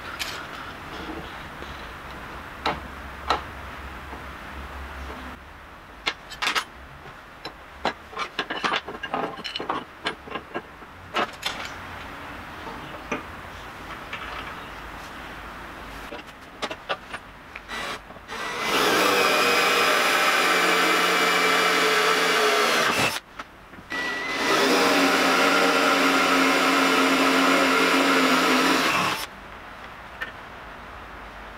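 Electric drill boring a hole in a steel hinge pivot bushing, run in two steady spells of about five seconds with a short break between them, to take a grease nipple. Before that come scattered light clinks and knocks of steel hand tools being picked up and set down.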